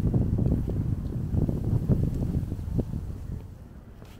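Wind buffeting the microphone: an uneven low rumble that eases off near the end.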